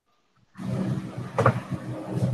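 Loud rumbling background noise with a low hum through an open video-call microphone, starting about half a second in, with one sharper burst near the middle.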